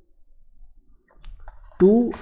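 A few faint, light clicks of a stylus tapping on a pen tablet as a digit is handwritten, followed near the end by a man's voice saying "two".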